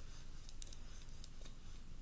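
Quiet room tone with a few faint, short clicks, the clearest a little over half a second in.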